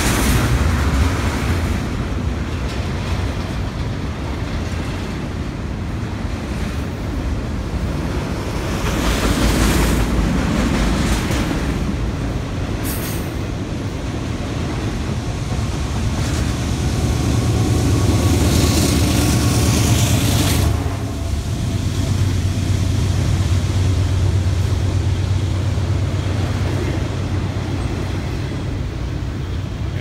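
Canadian Pacific double-stack container freight train rolling past, with a steady rumble of wheels on rails. Around two-thirds of the way through, the mid-train diesel locomotives pass and their engine hum swells, then drops away suddenly.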